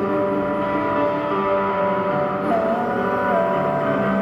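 Cherman "India" electric guitar layered through a Nux Core loop pedal: several held notes sounding together as a steady drone, with one higher note sliding and wavering in pitch in the second half.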